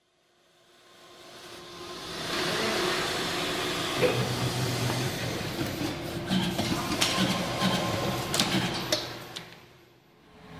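MBM Aerocut G2 programmable paper finisher running as sheets feed through: a steady mechanical whir with a low hum and several sharp clicks. It fades in over the first two seconds and fades out near the end.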